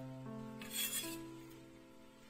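Background music of held keyboard-like chords. Just over half a second in comes one brief scrape of a kitchen knife blade sliding across a marble cutting board as it sweeps julienned ginger aside.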